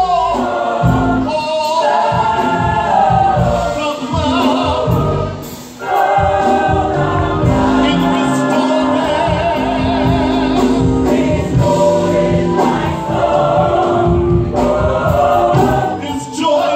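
Gospel mass choir singing in full voice with instrumental accompaniment, dipping briefly about six seconds in before coming back.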